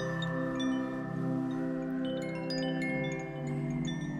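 Koshi wind chimes ringing: scattered, overlapping bright high notes struck at random over sustained low tones.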